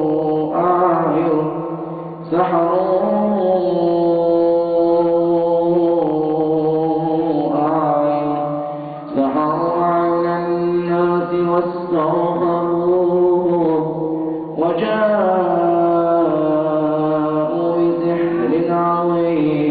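A man's voice chanting Quranic verses as ruqya recitation, in long drawn-out melodic phrases. There are short breaks for breath about two, nine and fourteen and a half seconds in.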